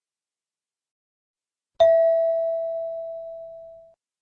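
A single bell-like chime about two seconds in: one clear tone with fainter higher overtones, struck once and fading away over about two seconds. It is the cue tone that marks the start of a question in a listening-test recording.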